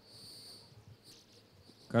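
A thin, high-pitched tone with overtones, lasting most of a second, over faint room noise; speech begins right at the end.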